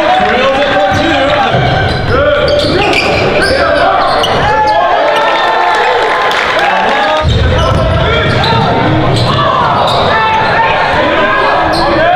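Live sound of a basketball game in a gym: the ball bouncing, shoes squeaking on the hardwood court and players' voices, all echoing in the hall.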